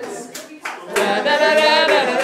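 A group of voices sings a steel band tune without the pans, with hand claps. The singing drops away in the first second and comes back strongly about a second in.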